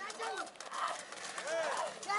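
Hooves of a galloping pair of racing bulls clattering on a dirt road as they pull a cart past at speed, with spectators shouting over them.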